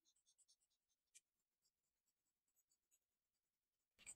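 Near silence, with faint scratches of an alcohol marker's tip coloring on paper in the first half second and a single sharp tick about a second in.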